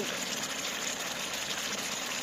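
Sliced pork and chilli bean paste frying in hot oil in a steel pot on a portable butane stove: a steady sizzling hiss.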